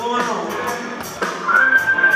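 Live blues-rock band playing: electric guitars, bass guitar and drums, with a high note held steady from about a second and a half in.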